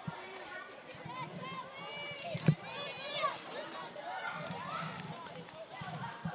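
Girls' voices calling out across an outdoor field at a distance, with one sharp crack about two and a half seconds in: a field hockey stick striking the ball.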